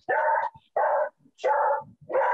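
A dog barking repeatedly, three short barks about half a second apart, picked up over a participant's video-call microphone.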